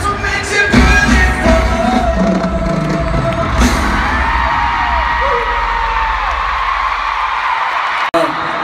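Live pop band music with a heavy drum beat and singing, through a crowd-held phone mic. The beat drops away about halfway through, leaving a large stadium crowd screaming and cheering, with high drawn-out screams over the roar.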